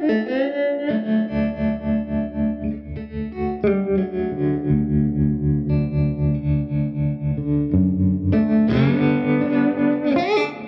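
Electric slide guitar in open D tuning playing a slow blues. Slides glide up into notes just after the start and again near the end, over a steady repeating bass note pattern.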